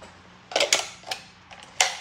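Handling noise from plate-carrier gear: about five short, sharp clicks and knocks at uneven spacing, from about half a second in to near the end.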